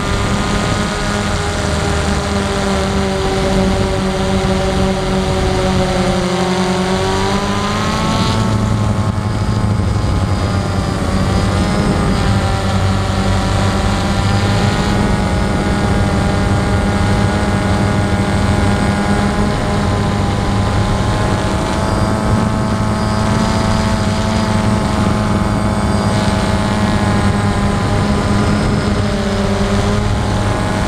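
Electric motors and propellers of a camera-carrying drone, heard close from its onboard camera: a steady whine of several tones that slide up and down as the motors change speed, with a shift about eight seconds in.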